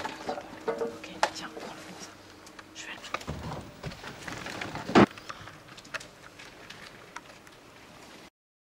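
Plastic bags and packaging crinkling and rustling as food is rummaged through in a supermarket waste bin, with one sharp knock about five seconds in.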